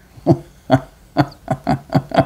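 A man laughing: a run of short, evenly spaced 'ha' bursts, about three to four a second, starting a moment in.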